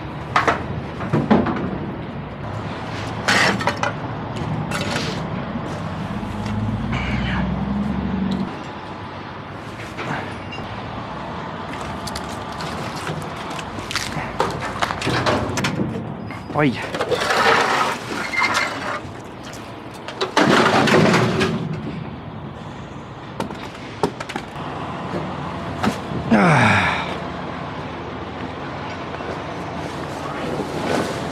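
Irregular clanks, knocks and scrapes of scrap metal debris being tossed and dragged across a steel trailer deck. A low rumble runs underneath for about the first eight seconds, then stops.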